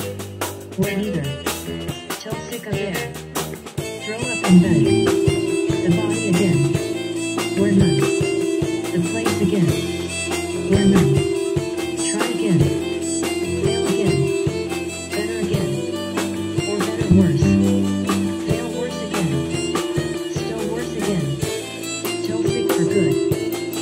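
A small live band plays an instrumental passage on drum kit, bass guitar, synth keyboard and violin, with no singing. The band gets louder and fuller about four seconds in, when a held high note and a steady drum beat come in.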